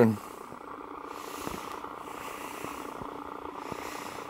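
A steady low hum of room background noise, unchanging throughout, with a few faint ticks.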